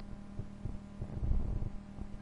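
Steady low hum from the recording's background, with faint irregular low thuds beneath it.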